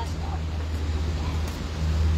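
Steady low engine hum, with a light click about one and a half seconds in as the van's rear cargo door swings open.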